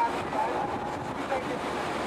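Steady rumble and rush of a moving vehicle heard from inside, with wind noise on the microphone. Faint, indistinct voices come and go under it.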